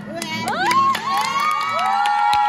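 A group of children cheering and shouting together: several high voices slide up in pitch, then hold long high screams, with scattered sharp clicks among them.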